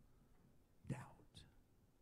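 Near silence, broken about a second in by one softly spoken word.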